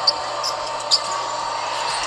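Basketball game on a hardwood court: a steady arena crowd murmur with two short, sharp high squeaks about a second apart, typical of sneakers on the floor as the ball is dribbled.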